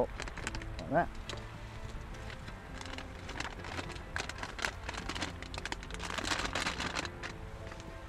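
Plastic packaging of an MRE flameless ration heater crinkling and rustling as it is handled, with a dense run of crinkles about six seconds in.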